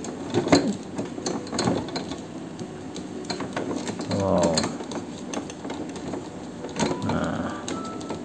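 Irregular metallic clicks and scrapes from a screwdriver working loose the stiff printhead fastening of an Epson LQ-2190 dot-matrix printer.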